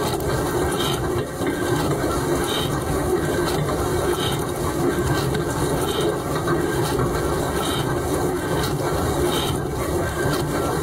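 Dishwasher mid-wash, heard from inside the tub: a steady rush of water sprayed over the dishes and racks. A brief swish recurs about every second and a half as a rotating spray arm sweeps past.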